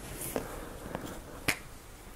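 Faint room hiss with three short, sharp clicks, the last one, about a second and a half in, the loudest.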